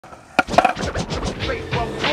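Skateboard rolling on a concrete skatepark: a sharp clack about half a second in, then a quick run of rattling clicks.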